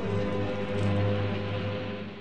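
Instrumental background music holding a sustained chord, starting to fade out near the end.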